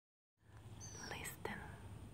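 A woman's faint breathy whisper sounds about a second in, over a low steady hum, fading in after a brief silence.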